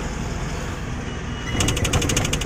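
Cab noise of a Tata goods truck driving at speed: steady engine rumble with road and wind noise. About a second and a half in, a fast run of sharp clicks, about ten a second, joins it.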